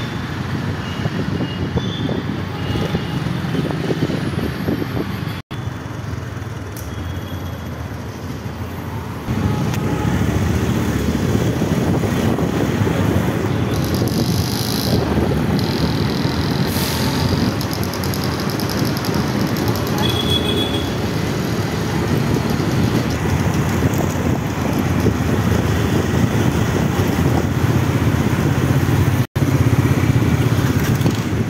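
Dense street traffic: a continuous mix of motorcycle and car engines and road noise, growing louder about nine seconds in. The sound cuts out for an instant twice.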